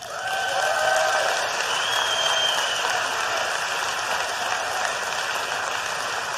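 Audience applauding and cheering, with a few drawn-out shouts rising above the clapping in the first couple of seconds.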